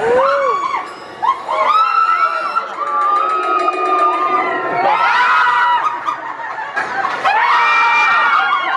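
A group of riders screaming together on a free-fall elevator drop ride, many long overlapping screams rising and falling in pitch, with a fresh surge of screams about five seconds in and again near the end.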